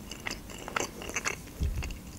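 Close-miked chewing with closed lips: soft wet mouth clicks and smacks as a mouthful of food is chewed. Near the end comes a short, soft low thump.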